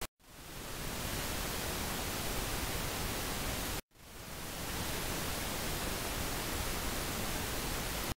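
Steady hiss of a recording's background noise with no speech. It cuts out to silence at the start and again just before four seconds in, and each time fades back up over about half a second.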